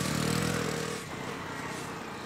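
Motor scooter engine running as it rides in, dying away about a second in and leaving a faint steady background.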